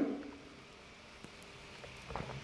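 Quiet room tone with faint sounds of a man sipping from a mug, including a small click a little past a second in.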